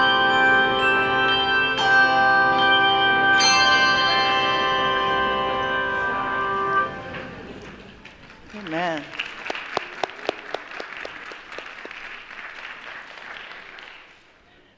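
Handbell choir ringing a sustained final chord, with a few fresh strikes, until the bells are damped together about seven seconds in. Light, scattered applause follows.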